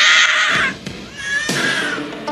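A woman's high, anguished wail, falling in pitch and breaking off after about half a second. A second, weaker cry follows about a second and a half in.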